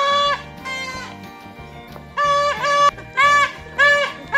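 Plastic toy trumpet blown. A held note stops just after the start, a fainter note follows, then from about two seconds in comes a run of short toots, about two a second, each sagging in pitch at its end.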